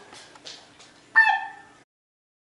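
A single short high-pitched cry about a second in, slightly falling in pitch, over faint room noise; then the sound cuts off abruptly.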